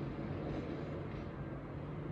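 Steady low background rumble with a faint hum, unchanging throughout, with no sudden sounds.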